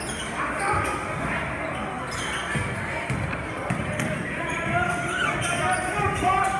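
Basketball being dribbled on a hardwood gym floor during live play, with short high sneaker squeaks and spectators' voices echoing around the gymnasium.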